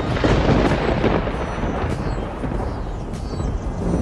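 A thunder-like rumble of noise with no tune in it. It starts suddenly as the music drops out, eases a little, and swells again just before the music returns.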